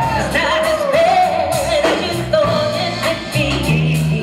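A live soul band playing, with a woman singing the lead melody over electric bass and drums.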